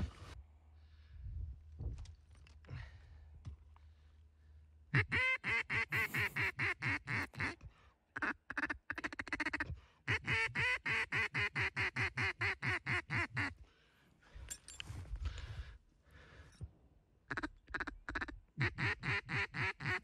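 Mallard duck call blown in long, even runs of quacks, about seven a second, once from about five seconds in and again from about ten seconds in, with shorter runs between and near the end: calling to ducks working the marsh.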